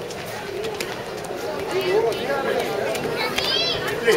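Several people talking in the background, with birds calling.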